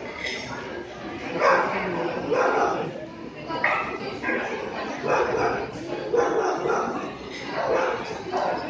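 A dog barking repeatedly in short yips, about one a second, over people talking in a large hall.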